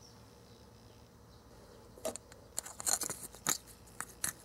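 A small plastic utensil scraping and stirring crumbly Konapun mix in a small plastic cup: a run of quick, scratchy clicks and scrapes starting about halfway in.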